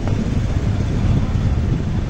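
Steady low rumble of wind buffeting the phone's microphone, mixed with a motorcycle engine passing close by.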